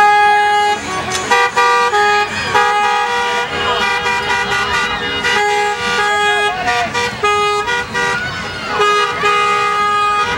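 Car horns honking in repeated blasts, short and longer, with two or more horn pitches sounding together, and voices calling out between the honks.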